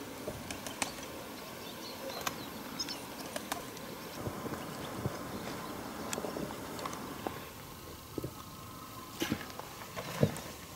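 Quiet open-air background with faint scattered clicks and ticks, and one brief high chirp about three seconds in; no gunshot.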